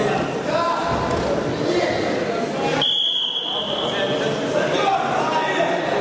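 Crowd voices and shouts echoing in a large sports hall. About three seconds in comes a single steady, high whistle blast lasting about a second, which stops the wrestling action on the mat.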